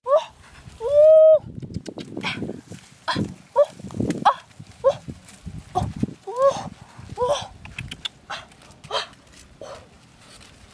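Short high-pitched animal calls, repeated every half second to a second, with one longer held call about a second in. Under them, leafy branches and dry ground rustle as wild oranges are pulled from a bush and gathered.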